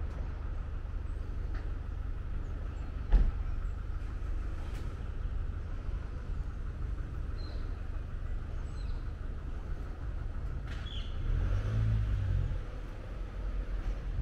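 Street ambience: a steady low rumble of road traffic, with a vehicle passing close and louder for a second or so near the end. One sharp knock sounds about three seconds in.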